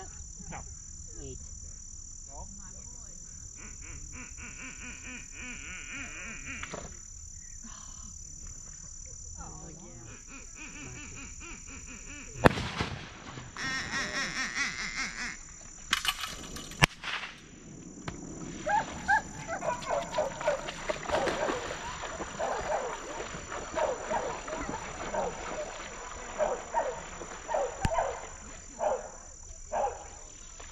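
A steady high buzz of insects, broken by a single loud sharp bang about twelve seconds in and more sharp knocks a few seconds later. From about halfway on comes a long run of short animal calls.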